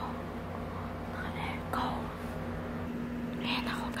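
A woman whispering in short breathy phrases over a steady low hum. The deepest part of the hum cuts out about three seconds in.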